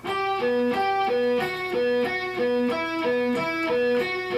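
Electric guitar picked slowly and evenly, alternate picking, crossing back and forth between the G and D strings: higher notes on the G string bounced off a low B on the D string, each note sounded separately, about three notes a second.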